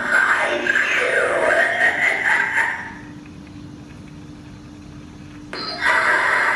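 An animated Halloween prop's recorded voice talking for about three seconds, then a quieter stretch with a steady low hum, and the voice cutting back in suddenly near the end.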